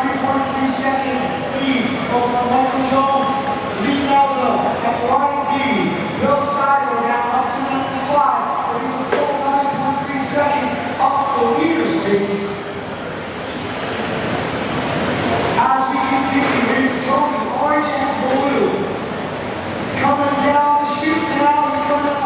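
Electric motors of 1/10 scale radio-control touring cars whining, the pitch rising and falling over and over as the cars accelerate and brake through the corners. The sound dips in loudness about halfway through.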